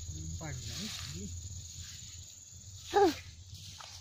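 A steady, high-pitched drone of insects, with low voices in the first second and a short, loud vocal exclamation about three seconds in.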